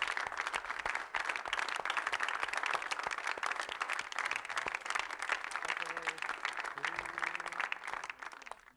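Applause: many hands clapping steadily to welcome a guest, thinning out near the end, with a faint voice underneath.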